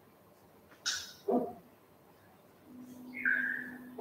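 A pause in a woman's talk: a quick breath, a short falling vocal sound, then a drawn-out hesitation hum at one steady pitch near the end.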